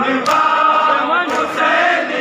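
Crowd of men chanting a noha (Shia mourning lament) in unison. Twice, about a second apart, a sharp strike from hands beating on chests in matam falls in time with the chant.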